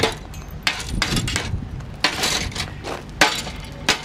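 Hammer knocking glassy slag off a freshly poured and cooled smelt on a steel plate. About half a dozen irregular strikes, each with a sharp crack and a glassy clink as the slag breaks.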